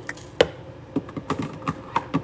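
Metallic light pink rhinestones tipped from a clear plastic tray into a bin of mixed rhinestones: scattered clicks and taps, the sharpest about half a second in.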